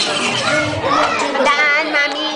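Excited high-pitched voices of children and girls calling out and squealing, with a wavering squeal near the end.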